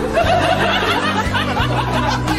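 A woman chuckling softly in short bursts over background music.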